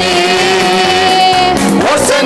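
A man singing a Tamil Christian worship song into a microphone, with music behind him. He holds one long note for about a second and a half, then slides into the next phrase.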